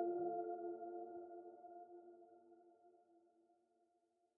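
The final chord of an electric guitar piece rings out and fades away over about three seconds, to silence.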